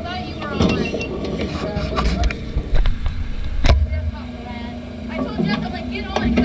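Indistinct voices over the low, steady running of a race car's idling engine, with one sharp knock a little past the middle.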